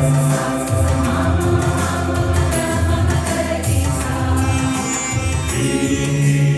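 Mixed choir of men's and women's voices singing a Malayalam Christian song composed in raga Mayamalavagowla, with sustained low notes under the melody.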